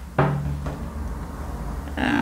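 A single soft knock about a fifth of a second in, followed by faint handling noise.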